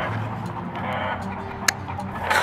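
Plier-style dog nail clippers snip once near the end, a single sharp click over a low, steady background.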